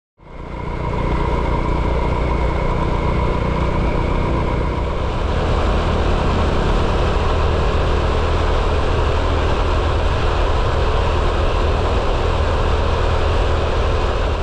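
Motor scooter engine running steadily while being ridden along a road, with wind rush on the microphone; the sound cuts in suddenly at the start and holds at an even level.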